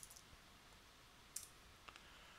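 Near silence broken by a few faint, isolated clicks of computer keyboard keys: two right at the start, one about a second and a half in and one near the end.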